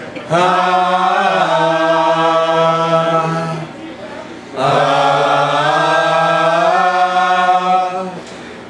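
A low chanted vocal drone: one long held note, a pause of about a second near the middle as if for breath, then a second long held note at nearly the same pitch, each bending slightly in pitch just before it ends.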